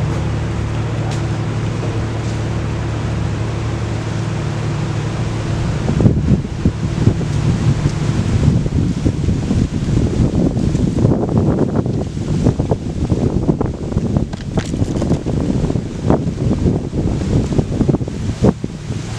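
A steady low mechanical hum with a few held tones for about the first six seconds, then gusty wind buffeting the microphone in loud, irregular surges.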